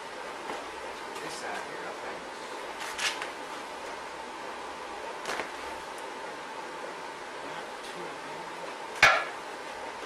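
A few sharp metallic clanks of steel door parts and clamps being handled on a steel workbench, the loudest near the end with a brief ring, over a steady faint hum.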